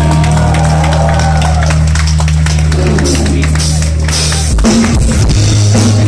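Live rock band playing loudly, with electric guitar, bass and drum kit, recorded from the audience. The bass line moves to a new note about four and a half seconds in, under steady drum and cymbal hits.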